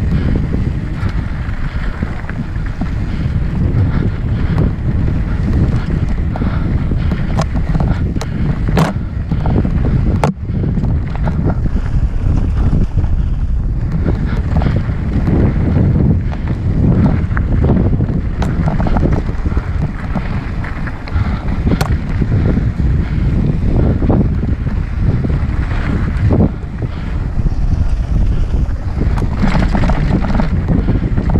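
Wind buffeting the microphone of a mountain-bike-mounted action camera, over the rumble of knobbly tyres rolling on a dry, rocky dirt trail. Sharp knocks and rattles from the bike as it hits bumps and rocks, a few of them standing out.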